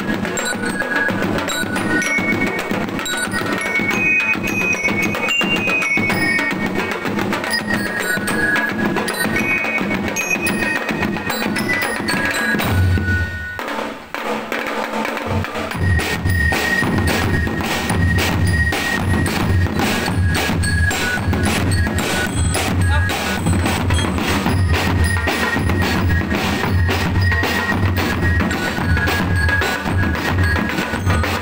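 Marching drum-and-lyre band playing: snare and bass drums keep a steady beat while bell lyres ring a high melody over it. About halfway through the playing breaks off briefly, then starts again with a heavier, steady bass-drum beat.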